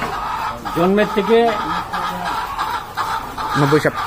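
A shed full of caged laying hens clucking steadily in the background, with a man's speech over it.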